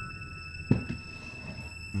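Steady high-pitched electronic tones over a low hum, forming an ambient drone, with a single sharp click a little under a second in.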